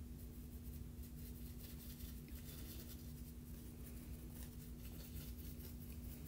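Faint, light scratching of a small paintbrush stroking powdered pigment onto embossed cardstock, over a steady low hum.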